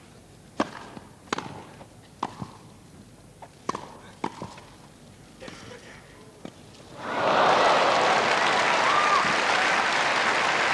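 Tennis rally: a serve and a run of sharp racket-on-ball strikes about a second apart, ending in a missed volley. About seven seconds in, a large crowd breaks into loud applause.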